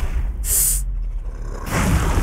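Movie trailer sound effects: a low rumble with one short, sharp hiss about half a second in.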